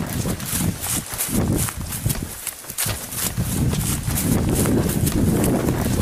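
Running footsteps through grass and undergrowth, about three strides a second, with a handheld camera jostling and rumbling on the microphone; there is a short lull about two seconds in.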